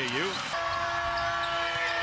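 A basketball dribbling on a hardwood court under arena crowd noise. A steady held note comes in about half a second in and carries on.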